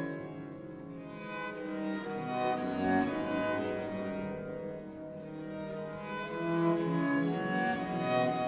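Early-music ensemble of bowed string instruments playing an instrumental passage of Reformation-era music, several lines of held notes moving together.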